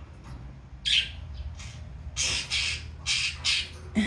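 A budgerigar's harsh, hissing 'shaa-shaa' calls: a single short raspy burst about a second in, then several more in quick succession in the second half.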